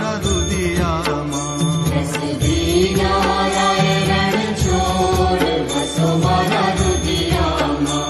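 Devotional aarti music: a voice chanting a Hindu aarti hymn over instrumental accompaniment with a steady, pulsing drum beat.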